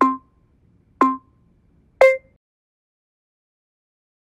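Workout timer countdown beeps, one short beep a second: two alike, then a third, higher-pitched beep about two seconds in that marks the end of the set.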